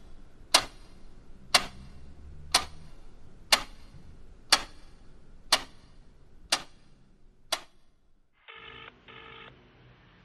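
Oreva wall clock ticking loudly once a second, eight ticks fading a little, then stopping. About a second later a telephone ring tone sounds in two short bursts.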